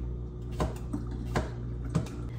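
Kitchen knife slicing vegetables on a cutting board: about three sharp knocks of the blade hitting the board, under a minute apart, over a low steady hum.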